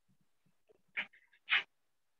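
A dog barking twice in short yaps, about half a second apart.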